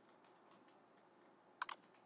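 Computer keyboard typing: a run of faint, quick key taps, with two louder taps about one and a half seconds in.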